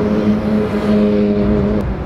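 Audi R8 Spyder's V10 engine running at steady revs as the car pulls away, a held engine note that cuts off suddenly near the end.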